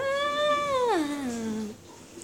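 A girl's voice singing one long wordless note that jumps up, holds, then slides down and stops near the end.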